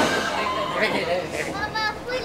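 A person's voice making wordless sounds, ending in a high, wavering, whinny-like cry near the end.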